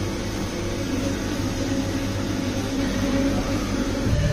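Steady low mechanical hum under an even rushing noise, the running of kitchen ventilation or appliance machinery.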